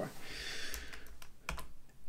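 A few quiet clicks of computer keys, spread over about a second, as the presentation is advanced to the next slide. A soft rustling hiss comes just before them.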